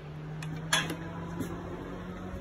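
A few sharp clinks and knocks under a second in and again about halfway, over a steady low hum, as the camera is handled and moved.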